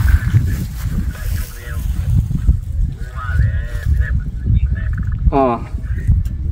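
Wind rumbling on the microphone, with a few short fragments of a man's voice, the clearest a rising syllable near the end.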